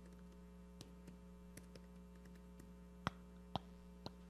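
Computer keyboard typing: a few faint key clicks and two sharper clicks about three seconds in, over a steady low electrical hum.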